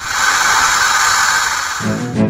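A loud, steady hissing sound effect like escaping steam, starting suddenly and lasting nearly two seconds, giving way to music near the end.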